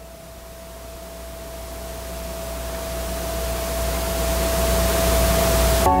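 A swelling noise riser with one held tone, growing steadily louder for nearly six seconds and cutting off abruptly as music begins right at the end: the opening of a video's soundtrack played back over loudspeakers.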